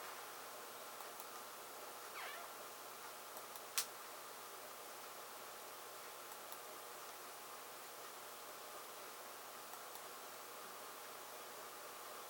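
Quiet room tone: a low steady hiss with a faint hum, broken by a single sharp click about four seconds in and a few tiny ticks.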